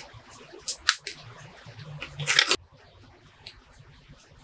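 Bonsai pruning scissors snipping small Zelkova twigs: two sharp snips close together about a second in, then a longer, louder cut about two and a half seconds in.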